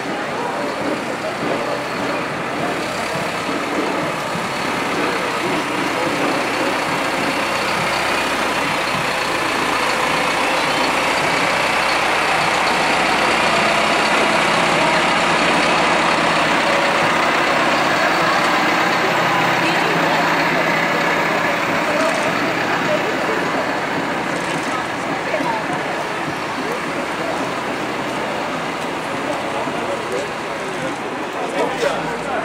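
Tractor engine running as it passes close by, growing louder toward the middle and fading again, with the murmur of a crowd underneath.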